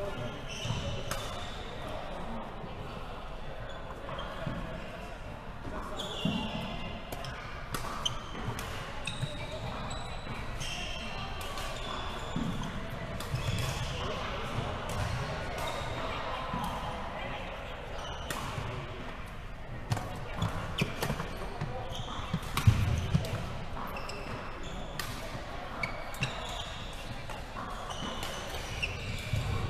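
Badminton rally: rackets striking the shuttlecock in repeated sharp clicks, with footfalls and shoe squeaks on the wooden court floor, in a large echoing hall with voices in the background.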